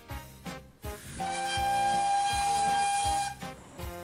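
A steam locomotive whistle blown once for about two seconds: one steady note with a hiss of steam, over background music.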